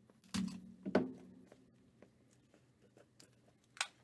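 Cardboard trading-card box being handled: a rustle and scrape about half a second to a second in as the blue inner box is pulled out of its outer box, then a brief sharp sound near the end as its flip-top lid is opened.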